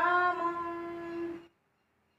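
A woman's voice singing a line of Sanskrit verse, holding one long steady note before breaking off suddenly about one and a half seconds in.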